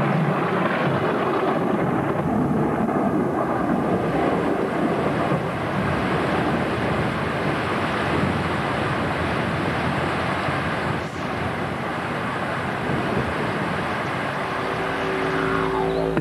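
Thunderstorm: thunder rolling and rumbling continuously as a dense, steady roar. Near the end, a low sustained musical drone comes in under it.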